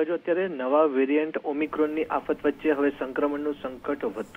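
Only speech: a newsreader reading a bulletin with no pause, sounding band-limited like broadcast audio.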